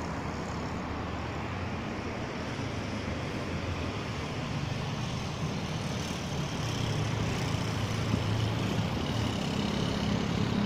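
Steady motor vehicle engine hum and traffic noise, growing a little louder in the second half.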